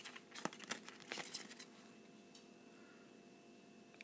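Faint rustling and a few small clicks from a paper collector's checklist and a small plastic toy figure being handled in the fingers, over about the first second and a half.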